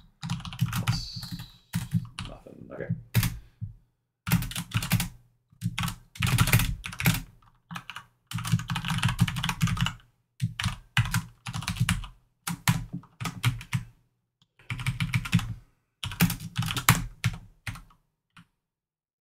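Typing on a computer keyboard: bursts of rapid keystrokes, each about a second long, with short pauses between them.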